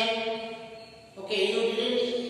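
Voices chanting long, steady held notes. The chant fades and breaks off about half a second in, then starts again on a new held note just after a second.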